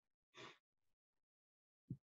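Near silence on a video call, broken by one faint breath about half a second in and a brief low thump just before the end.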